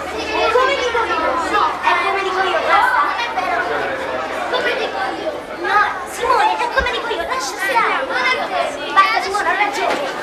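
Crowd of schoolchildren chattering and calling out all at once, many voices overlapping.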